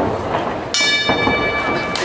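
A fight timekeeper's round signal sounds about two-thirds of a second in, a steady ringing tone held for just over a second over the hall's background noise, marking the end of the round.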